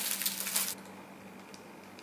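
Packaging crinkling as it is handled and opened, stopping abruptly less than a second in; after that only a quiet room with a faint steady hum.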